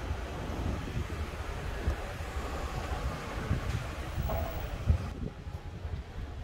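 Low rumble of wind buffeting a handheld phone's microphone, with irregular bumps from the phone being handled while walking.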